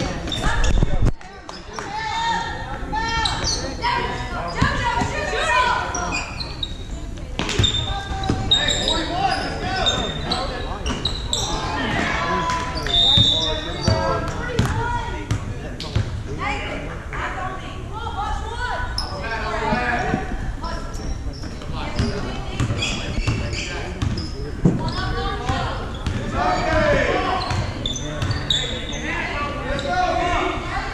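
A basketball dribbled and bouncing on a hardwood gym floor, with many players' and spectators' voices and shouts echoing in the hall.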